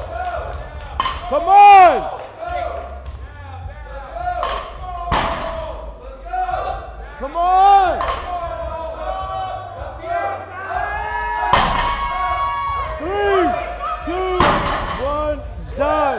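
Men shouting and yelling encouragement at a lifter during a heavy deadlift, in loud wordless bursts. Four sharp bangs come through the shouting, typical of a loaded iron-plate barbell hitting the floor.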